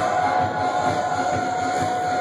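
Loud live music recorded on a phone microphone at a club show: a long held high tone over a steady pounding beat.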